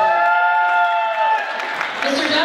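One long held vocal call lasting about a second and a half, over crowd noise with cheering and clapping in a large hall.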